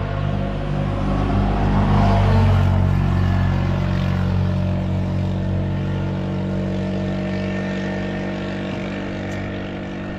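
An engine drones steadily at a fairly constant pitch, swelling to its loudest about two seconds in and then slowly fading.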